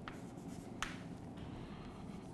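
Chalk writing on a chalkboard: faint scratching strokes as letters are written, with one sharp tap a little under a second in.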